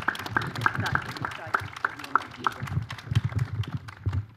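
A small crowd applauding with scattered claps that thin out near the end, mixed with low bumps from a handheld microphone being passed between hands.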